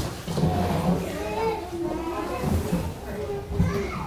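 Indistinct chatter of several voices, children's among them, talking and playing as a church service breaks up.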